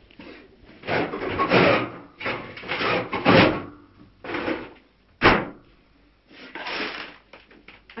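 Irregular rustling and handling noises of grocery packaging being unpacked in a kitchen, with a single sharp knock about five seconds in.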